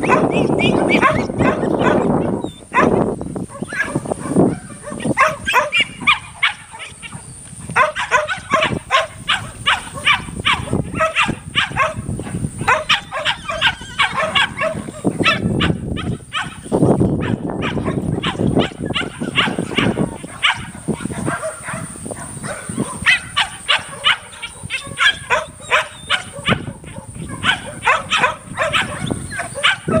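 A dog barking and yipping in quick, repeated runs throughout, with longer, lower cattle bawls near the start and again about halfway through.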